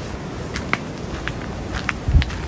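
A whole coconut in its husk being handed over and shaken to check for water inside. A few light, scattered knocks and taps sound over a steady background noise.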